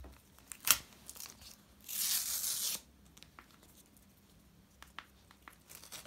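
A paper card envelope being torn open by hand: a single rip of just under a second about two seconds in, after one sharp click, then faint paper rustles.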